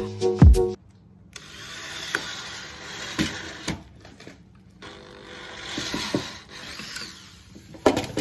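Music cuts off within the first second. Then a Black+Decker drill drives screws through a metal bracket into a 2x6 board, running in two spells of a few seconds each with a short pause between, and a few clicks near the end.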